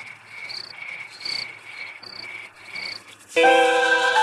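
Crickets chirping in a steady repeating pattern, about two chirps a second, as night ambience. Near the end, soft music with sustained chords comes in suddenly and covers them.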